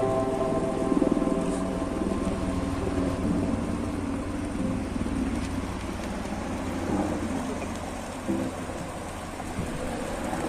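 Shallow stream running steadily over rocks and small cascades, a continuous rushing of water.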